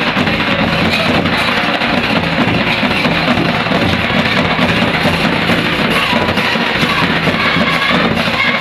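Loud live folk drumming on nagara kettle drums, a dense run of rapid strokes that keeps going without a break.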